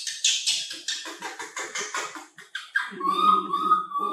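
Baby macaque screeching in rapid, high-pitched cries, about four a second. A person's voice takes over about three seconds in.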